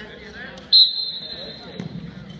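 A whistle gives one sharp, steady high blast about a second long, starting just under a second in. Near the end there is a low thud of a body going down on the wrestling mat.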